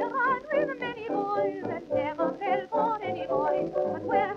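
1929 dance band music played from a shellac 78 rpm record: melody lines with a strong vibrato over a steady beat of about two pulses a second.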